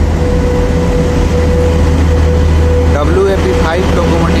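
WAP-5 electric locomotive rolling close past into the station: a steady deep hum with a constant mid-pitched whine over the noise of the train. A voice is heard briefly near the end.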